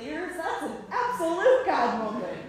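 A high-pitched voice with pitch that swoops up and down in short broken phrases, not clear as words.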